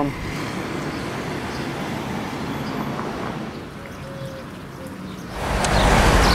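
Outdoor town ambience with a steady hum of distant traffic. About five seconds in, a louder, even rushing noise takes over.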